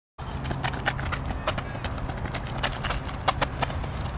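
Quick, irregular taps of trainers striking a rubber running track during an agility-ladder footwork drill, over a steady low background noise; the sound starts abruptly just after the beginning.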